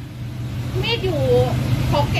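Steady low hum of an idling vehicle engine, with a voice speaking briefly over it.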